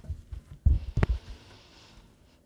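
Tarot cards handled on a cloth-covered table: two low thuds about a second in, the second with a sharp tap, as the deck is set down, followed by a faint hiss of cards sliding.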